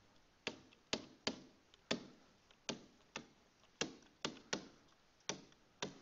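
Stylus tapping on a tablet screen during handwriting: about a dozen faint, sharp clicks at irregular spacing, roughly two a second, one at each pen-down.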